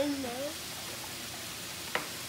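Chicken, peppers and onions sizzling in a large cast iron pan, a steady frying hiss. A single sharp tap sounds near the end.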